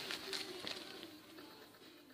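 Faint crinkling of a clear plastic bag and aluminium foil being handled, dying away to near silence near the end.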